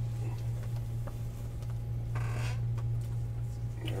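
A brief scrape of a shrink-wrapped cardboard trading-card box being slid out of a stack about two seconds in, with a few faint handling clicks, over a steady low hum.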